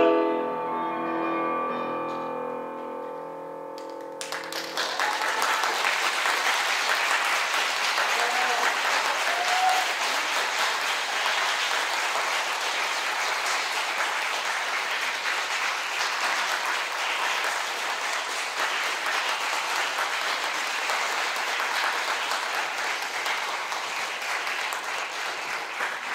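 The final chord of a soprano–tenor opera duet with piano dies away. Audience applause breaks out about four seconds in and carries on steadily.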